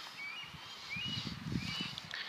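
Small birds chirping several times, each a short rising note, over a low rustle that builds from about half a second in.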